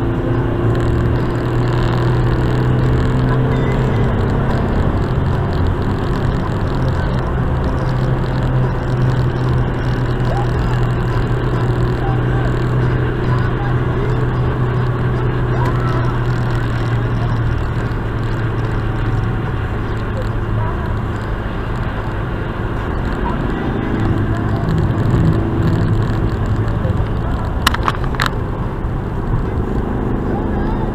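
Road noise inside a moving car, picked up by a dashcam: tyre and road rumble under a low steady engine drone. The drone fades out about two-thirds of the way through, and a few sharp clicks come near the end.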